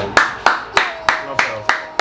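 Sharp hand claps in a steady rhythm, about three a second, seven in a row.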